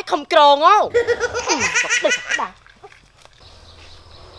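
A person laughing loudly for about a second and a half, right after a short shouted phrase. Near the end a faint, steady, high insect drone begins, like crickets.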